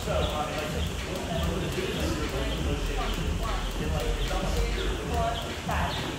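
Jump rope turning steadily, its rope ticking on the rubber gym floor and feet landing in an even rhythm, with voices in the background.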